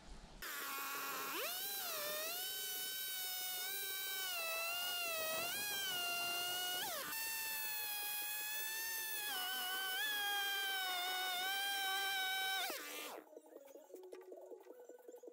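Chainsaw running at high revs while cutting into a log. It revs up sharply just after starting, holds a steady high whine with small dips as the chain bites, and cuts off suddenly about a second before the end.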